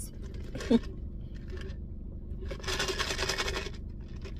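Iced drink being sucked through a plastic straw: a hissing slurp lasting about a second, a little past the middle, over a low steady hum.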